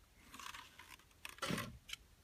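Faint handling noises of a plastic quadcopter being tipped up and set back down on a wooden bench: a light rustle, then a soft knock about one and a half seconds in and a small click just after.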